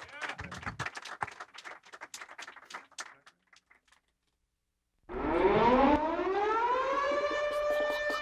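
Audience applause for about three seconds, then after a short silence a loud sustained pitched tone that glides up in pitch and then holds steady, with a few light clicks near the end.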